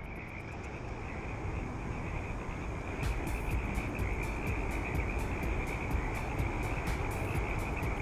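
A chorus of frogs calling: a dense, steady high-pitched trill, with rapid sharp clicking calls joining in about three seconds in, over a low rumble.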